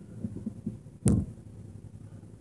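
A single sharp knock with a short low boom about halfway through, after a few faint low bumps.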